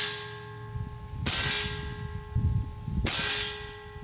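Two shots from a Diana XR200 .22 PCP air rifle, about a second and a half apart. Each is a sharp crack followed by a metallic ring that fades over about a second.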